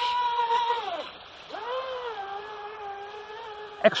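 Feilun FT011 RC speedboat's brushless motor whining at high revs, on a 4S LiPo. About a second in, its pitch drops away as the throttle is eased off. Half a second later it rises again and holds a steady, slightly lower whine as the boat accelerates.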